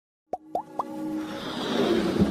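Animated intro sound effects: three quick rising pops about a quarter second apart, followed by a swelling whoosh that builds up.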